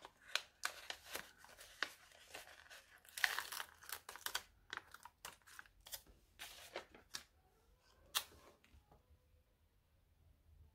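Paper sticker sheet being handled, crinkling, with stickers peeled off their backing paper in a run of short crackles and clicks, busiest around three to four seconds in, with one sharper crackle about eight seconds in.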